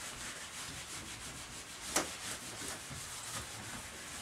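Eraser rubbing across a whiteboard, wiping off marker writing in a soft, uneven scrubbing. There is a single brief tap about two seconds in.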